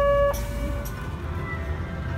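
A loud, steady electronic tone, like a buzzer, that stops abruptly about a third of a second in. It is followed by a low, steady rumble with faint thin whines.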